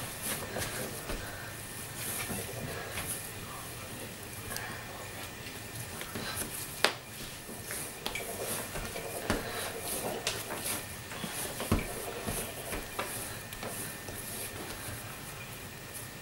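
Hands kneading and pressing a ball of cookie dough on a wooden tabletop: soft repeated rubbing and brushing, with a sharp knock about seven seconds in and another near twelve.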